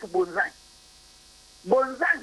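Speech over a telephone line, broken by a pause of about a second. In the pause a faint steady electrical hum of the line is heard.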